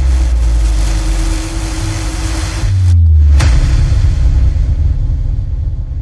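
Cinematic logo-reveal sound effect: a deep low rumble under a hiss, with a brief dip and then a sharp hit about three and a half seconds in, fading out near the end.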